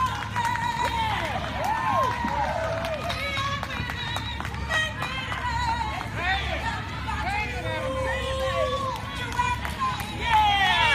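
Female jazz vocalist singing live through a PA system, her voice sliding up and down in long arcing runs, over a steady low accompaniment.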